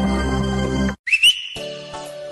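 Music that cuts off abruptly about a second in, followed by a high whistle that slides up in pitch and then holds one steady note.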